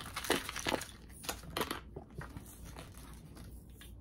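Handling noise of thin crinkly material: a few short crinkles and crackles in the first two seconds, then fainter rustling.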